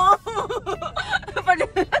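A woman laughing and talking in short bursts, over the low steady rumble of a car cabin.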